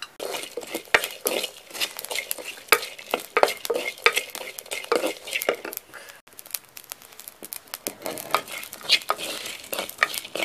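A ladle stirring and scraping cashews and whole spices as they dry-roast in a clay pot, an irregular run of scrapes and rattles with a brief pause about six seconds in.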